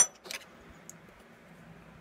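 Small metal heatsink set down on a wooden desk: a sharp metallic clink with a brief ring at the start, then a lighter knock about a third of a second in and a faint tick later.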